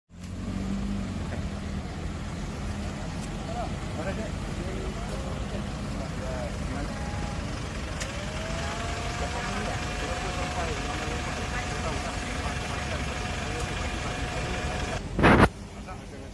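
Road traffic and idling car engines with faint voices in the background. A steady high tone holds for several seconds from about halfway, and a short loud thump comes near the end.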